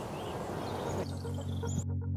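Open-field outdoor ambience with faint bird chirps. Soft synthesizer music with low held notes fades in about halfway through.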